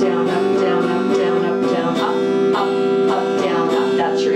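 Solid-body electric guitar played with a clean tone, strummed in a steady pattern of bass note followed by quick down-up strokes on G major seventh and C major seventh chords, the chords ringing on between strokes.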